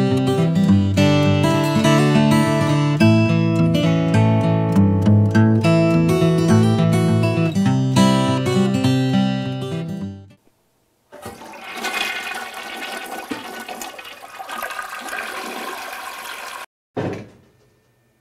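Acoustic guitar music for the first ten seconds, then a toilet flushing: water rushing for about five seconds, cut off suddenly, with a brief burst of sound just after.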